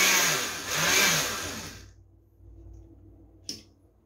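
Red countertop blender switched on and running, blending the eggs, oil and sugar for a sweet potato cake batter; it starts abruptly and dies away within about two seconds. A single sharp click follows near the end.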